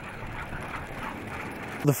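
Steady rolling noise of a golf cart being pulled at speed over a dirt road by a running team of sled dogs.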